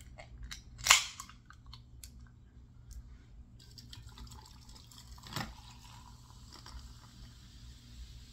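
Soda can's pull tab cracked open about a second in: one sharp pop with a short fizz, then a few faint clicks and a soft steady hiss.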